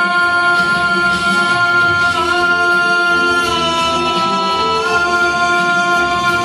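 A man singing live into a handheld microphone over backing music, holding long notes that step to a new pitch a few times.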